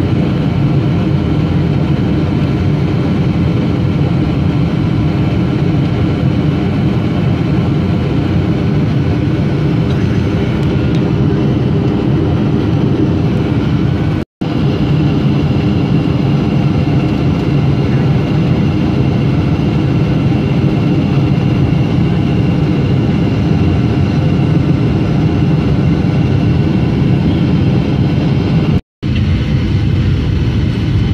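Jet airliner cabin noise from a window seat beside the engine: a steady rumble of engine and airflow with faint steady whines, on the approach to landing. The sound cuts out for a split second twice, about halfway through and near the end.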